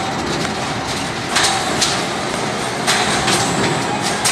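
Beetleweight combat robots fighting: a steady mechanical whir from the spinning robot, with sharp hits twice around one and a half to two seconds in and twice again around three seconds.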